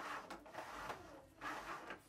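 Cups being handled on a tabletop during a cup-flipping game: three soft scrapes and taps.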